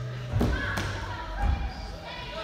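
Two thuds of a body landing on a padded gym floor after a parkour flip, a sharp one about half a second in and a duller, deeper one about a second later.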